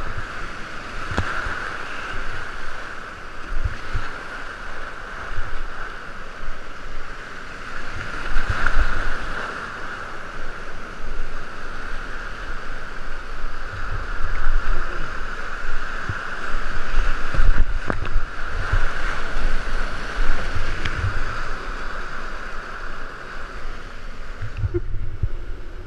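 Whitewater rapids rushing loudly from inside a kayak run, a steady roar of churning water with irregular low buffeting on the microphone and a couple of sharp knocks.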